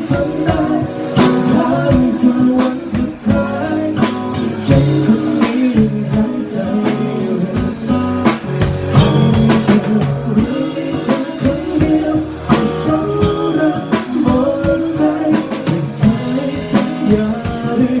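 A man singing live into a microphone with a band accompanying him on guitar and drum kit.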